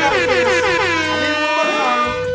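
Air horn sound effect with gliding, falling pitches, played over a music bed.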